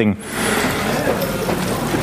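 A loud, steady rushing hiss lasting nearly two seconds, starting just after a pause in speech and cutting off suddenly as speech resumes.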